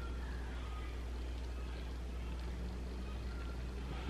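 Quiet room tone with a steady low hum and no distinct sounds.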